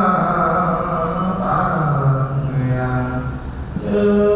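Buddhist monks chanting in low male voices, drawn-out held tones that slowly rise and fall in pitch, the leading voice amplified through a microphone.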